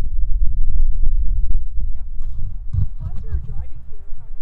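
Heavy low rumble of wind buffeting the microphone, with a few sharp knocks in the first two seconds.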